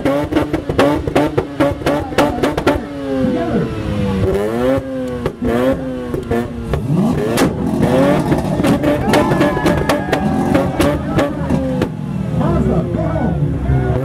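Mazda RX-8's two-rotor rotary engine revving up and down against a two-step launch limiter, with rapid exhaust pops and bangs, thickest in the first few seconds. Later the revving becomes more continuous.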